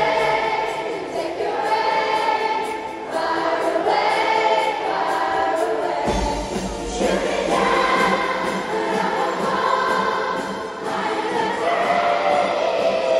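A massed children's choir singing a song with musical accompaniment, in phrases that break every few seconds, with a bass line coming in about halfway through.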